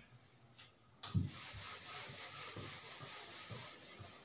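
A whiteboard being wiped clean, a steady rubbing swish starting about a second in with faint knocks as the strokes change direction, fading near the end.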